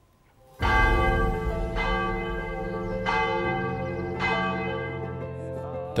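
Church bell struck four times, about a second and a quarter apart, starting about half a second in. Each strike rings on in long, steady, many-toned hum, and the first strike is the loudest.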